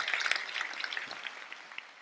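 Audience applause dying away after the close of a lecture: a dense patter of clapping that fades steadily through the two seconds.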